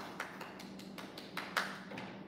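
Light irregular taps and pats of a child's hands and plastic toy tools on a plastic folding tabletop as she presses play dough, about half a dozen, the loudest about a second and a half in.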